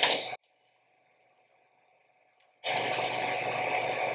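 Metal clips tied at even spacing along a string dropped and striking the floor in a quick run of faint clicks that come closer and closer together as the later clips fall faster, heard about two and a half seconds in over steady hiss from the lecture microphone.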